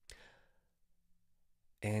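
A man's short breath through the mouth, about half a second long and fading out. He starts speaking again near the end.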